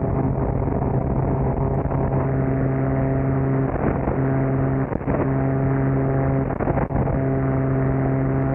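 Adam A500's twin Continental TSIO-550-E turbocharged six-cylinder engines and propellers at takeoff power during lift-off and initial climb, a steady, muffled drone with a strong low hum. Two brief dips in level come about five and seven seconds in.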